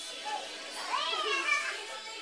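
A young child's high-pitched playful squeal, rising and falling in pitch, about a second in, with pop music playing behind.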